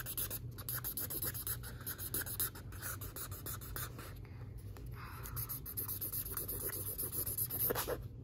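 A felt-tip marker scribbling back and forth on paper in a run of quick, scratchy strokes.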